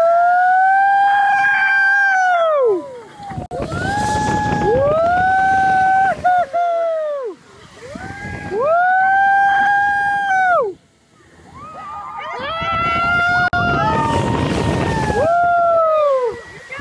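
Riders on a swinging pendulum ride screaming in long held cries, one with each swing, about every three seconds, with wind rushing on the microphone.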